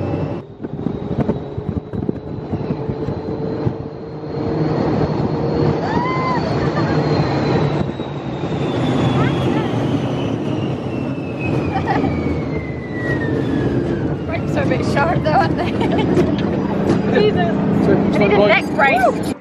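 Test Track ride vehicle running at speed, with a steady rumble and wind rushing past the microphone. A high whine slowly falls in pitch over about ten seconds. Brief voices come near the end.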